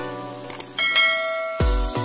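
A bright notification-bell ding rings out just under a second in, right after a couple of short clicks, over electronic background music. Near the end a beat with deep bass kicks comes in.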